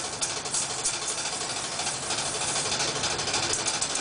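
Audience applauding, a dense patter of hand claps that thickens a little past the middle.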